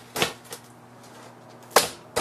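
Rocker pizza cutter's blade knocking down through a deep-dish pizza onto the pizza pan beneath: two light knocks in the first half second, then one louder, sharper knock near the end.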